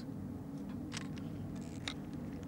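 A steady low hum with a few faint clicks, one about a second in and another near the end.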